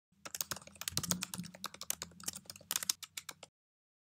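Computer keyboard typing: a quick, dense run of keystrokes that stops suddenly about three and a half seconds in.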